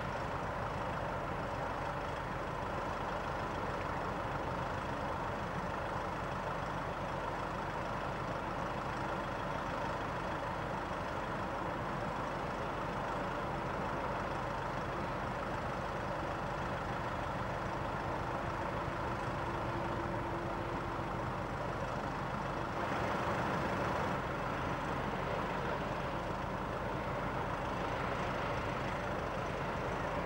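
Steady low rumble of heavy engines with a constant hum, rising slightly for about a second near the end.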